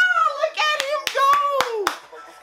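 A man's excited, wordless hollering with long, drawn-out falling pitch, broken by several sharp, irregular hand claps.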